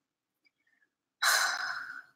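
A woman's breathy sigh, starting just over a second in and trailing off.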